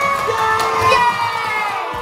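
Children and adults cheering together in one long, drawn-out shout that slowly falls in pitch.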